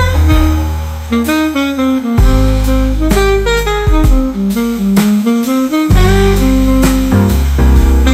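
Slow instrumental jazz ballad: a saxophone plays the melody over piano, upright bass and drums.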